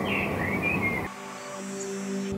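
Birds chirping over outdoor background noise, with a low steady musical note underneath; about a second in, the birds and noise cut off abruptly, leaving soft sustained music.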